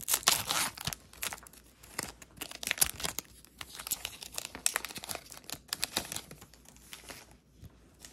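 Foil wrapper of a Topps Chrome trading-card pack being torn open and crinkled by hand: an irregular run of sharp crackles, thickest in the first second and thinning near the end.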